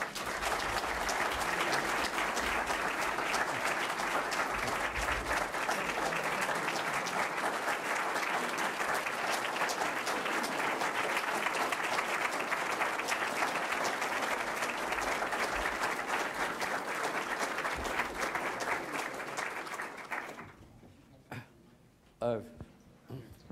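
An audience applauding steadily, then dying away near the end.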